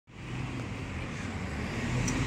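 Non-step city bus approaching at low speed, its engine's low hum growing steadily louder as it draws close.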